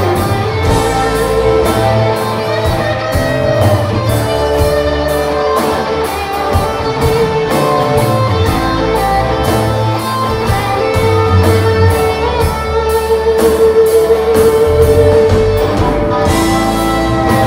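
Live rock band playing, with electric guitars to the fore over bass, drums and keyboards. A long held note rings out near the end.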